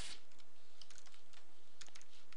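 Computer keyboard keystrokes, a handful of separate key presses, faint over a steady background hiss.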